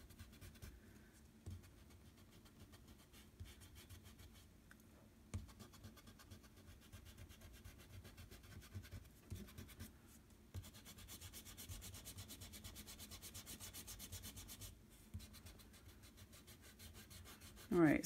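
Eraser rubbing back and forth on drawing paper, taking the pencil guide lines off an ink drawing. The strokes are faint, with a steady run of quick strokes from about ten seconds in to about fifteen.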